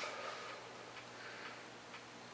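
Faint room tone: light ticking over a low steady hum.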